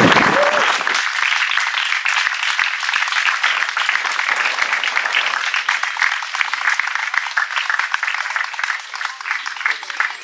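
Audience applause: many hands clapping together in a dense, steady patter that thins a little near the end.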